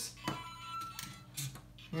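Lego Mario interactive figure's small speaker playing short electronic game sounds (beeps and jingle fragments), with a few sharp plastic clicks as the figure is moved over the bricks.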